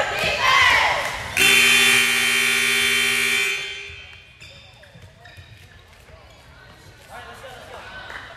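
Gymnasium scoreboard buzzer sounding one loud, steady, harsh tone for about two seconds, starting about a second in, then dying away in the echo of the hall; it signals the teams to take the court for the set.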